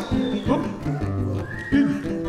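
Two acoustic guitars playing an instrumental passage of a samba de roda–style song, with a few short high gliding tones over them, one arching about a second and a half in.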